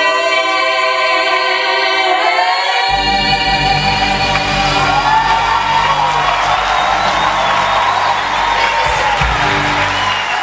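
Female voices holding a final sung note in close harmony, which breaks off about three seconds in. The band's last chord and audience cheering and whoops then fill the rest.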